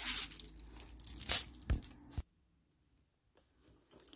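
Crinkling and rustling of a thin white wrapper being pulled off a handbag's leather tassel, with two sharper rustles about a second and a half in. The sound cuts off suddenly a little after two seconds, with only faint handling near the end.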